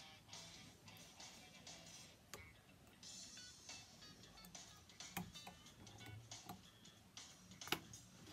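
Faint background music, with a few light clicks from a fly-tying whip finishing tool and thread being handled at the vise.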